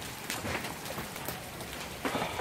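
Hailstorm easing off: steady rain noise with scattered hailstones striking.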